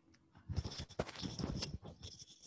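Book pages rustling and being turned, handled close to the microphone: an irregular run of scratchy rustles starting about half a second in.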